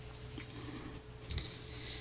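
A coloured pencil shading on a coloring-book page, faint.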